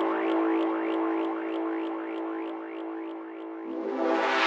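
Psytrance intro on synthesizers: a held drone note under a short rising synth sweep repeating about four times a second, the sweeps fading away near the end. There are no drums or bass yet.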